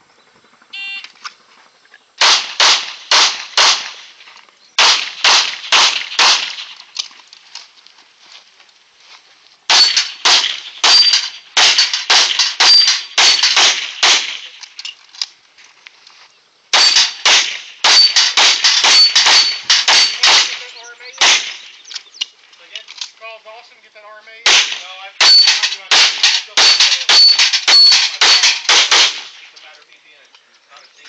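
Pistol fired in rapid strings, five bursts of several shots each with pauses between, and steel target plates ringing after hits in the later strings. A short electronic shot-timer beep comes about a second in, just before the first shots.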